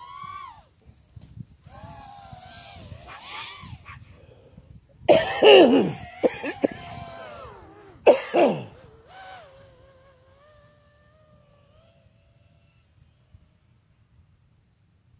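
A dog gives sharp barks, a loud cluster about five seconds in and another about eight seconds in, with high, wavering whines between them. The whining trails off a couple of seconds before the end.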